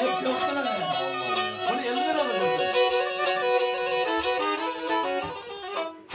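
Karadeniz kemençe, the Black Sea three-stringed bowed lyra, playing a folk melody over a steady held note. Voices talk over it, and the playing dies away near the end.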